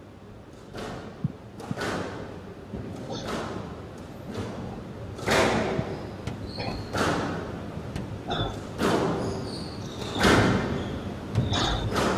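Squash rally: the ball is struck by the rackets and cracks off the walls about once a second, with a few short squeaks of shoes on the court floor. The strikes echo in a large hall.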